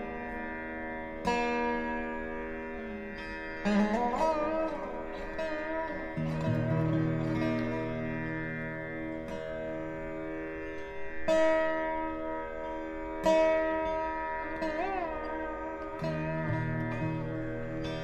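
Indian classical instrumental background music: a plucked string instrument sounds slow phrases, some notes sliding in pitch, over a steady drone.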